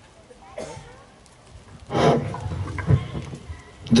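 Microphone handling noise over the PA, heard as rubbing and a few bumps. It is loudest about two seconds in, with low thumps following over the next second.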